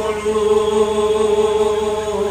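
A man's voice chanting a verse of the Bhagavata scripture in Bhagwat Path recitation style. He holds one long, steady note.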